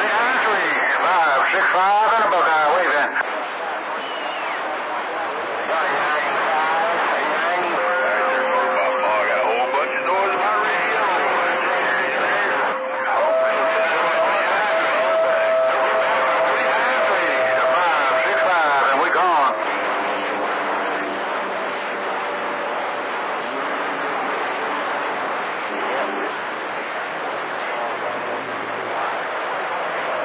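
CB radio receiving long-distance skip on channel 28: several far-off stations talking over one another, coming through the radio's speaker as garbled, unintelligible voices. Steady whistle tones from overlapping carriers sound through the middle of the stretch.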